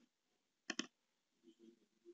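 Two quick computer mouse clicks, close together, about three-quarters of a second in.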